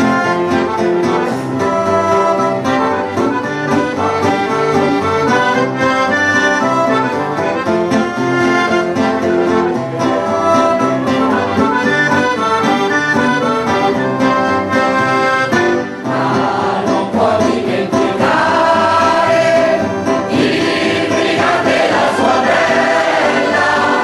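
Mixed choir of men's and women's voices singing a song live, with instrumental accompaniment. The singing swells fuller and brighter near the end.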